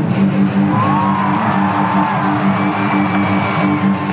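Live amplified electric guitar sustaining a held, droning chord in an arena, heard from the audience, with crowd whoops and cheers rising over it about a second in.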